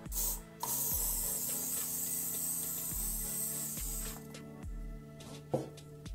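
Aerosol spray can spraying: a short puff, then a steady hiss for about three and a half seconds that cuts off sharply. A sharp click near the end.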